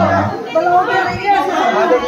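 Several people talking at once: indistinct chatter of voices in a large room.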